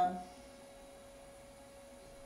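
The tail of a woman's drawn-out "uh", then quiet room tone with a faint, steady hum.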